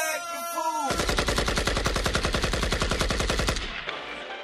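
A sung vocal line in the music ends about a second in. It is followed by a rapid machine-gun-fire sound effect over the club sound system: fast, even rattling for about two and a half seconds that stops shortly before the end.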